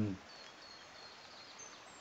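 Faint open-air background with a few thin, high chirps of distant birds, after a man's voice trails off at the start.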